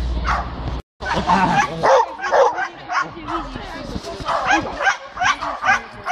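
A dog barking and yelping in quick repeated bursts as it is agitated on a lead during bite-sleeve protection training. A brief dropout in the sound comes about a second in, just before the barking starts.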